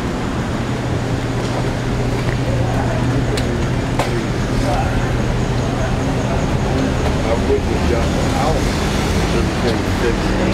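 City street traffic noise with a steady low engine hum from a nearby vehicle, and faint voices in the background. There is one sharp click about four seconds in.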